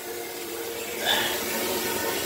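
Homemade vapor blaster's gun spraying a water-and-media slurry with compressed air against a part inside the blast cabinet: a steady hiss of spray with a faint hum beneath, briefly louder about a second in.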